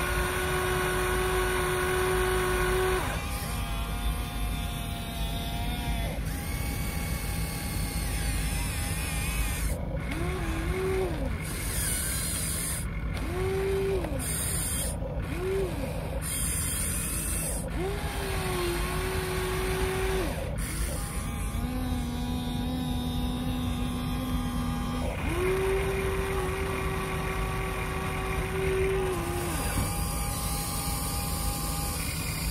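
Hydraulic pump of a Huina radio-controlled excavator whining in repeated spells as the boom and bucket are worked, the pitch swooping up as each spell starts and falling away as it stops, over a steady hiss.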